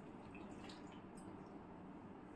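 Faint sound of a little water poured from a plastic jug into a stainless-steel mixer-grinder jar.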